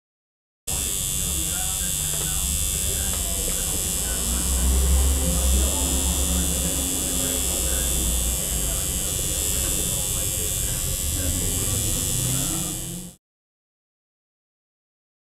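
A steady electric buzz with muffled voices underneath, cut in sharply near the start and cut off sharply near the end.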